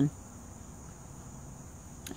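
A steady, high-pitched insect chorus trilling without a break, with no other sound standing out.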